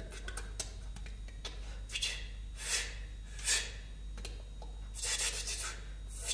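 A person's short breathy exhalations, about four soft puffs of breath spaced a second or so apart, over a low steady hum.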